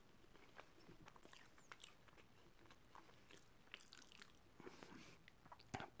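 Near silence with faint, scattered mouth clicks of someone quietly chewing a mouthful of food.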